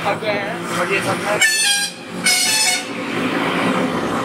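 Two short, high-pitched vehicle horn blasts in quick succession, starting about a second and a half in, over the running noise of a motorbike in traffic.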